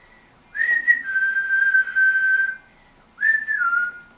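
A person whistling a short tune: a brief higher note steps down into a long held note. After a pause a second note slides down in pitch.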